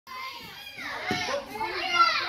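Children's voices chattering and calling out, high-pitched and overlapping, with the loudest call near the end.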